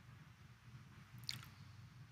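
Near silence: low room hum, with one faint, brief sound a little past halfway.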